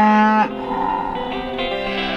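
One of the cattle mooing once, loudly: the call holds a steady pitch and cuts off about half a second in. A plucked-guitar music bed runs underneath.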